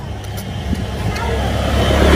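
Low rumble of road traffic, steadily growing louder as a vehicle approaches, with a few faint clicks.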